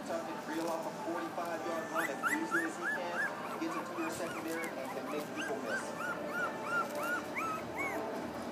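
Small dog whining in a run of short high whimpers, each rising and falling in pitch, about three a second, starting about two seconds in with a brief pause midway.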